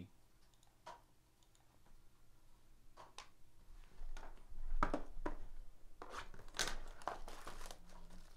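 Clear plastic wrap on a trading-card box crinkling and tearing as it is opened by hand. Scattered light clicks and taps of handling come first, and the crinkling is loudest near the end.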